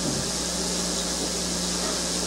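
Steady hiss with a low electrical hum, the noise floor of an old analogue recording.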